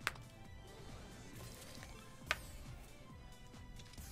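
Faint slot-machine game music with steady tones, broken by two short clicks: one at the start and one a little over two seconds in.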